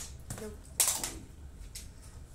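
Hard plastic toy dinosaurs clacking and scraping on a tile floor in a few short, sharp clicks, with a brief spoken "não" just before the first.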